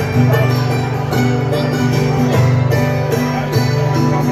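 Hammered dulcimer playing a dance tune live, with struck notes ringing over a steady low sustained tone.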